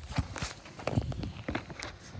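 Scattered light knocks and scuffs close to the microphone, irregular and several a second, from the recording phone being handled and carried.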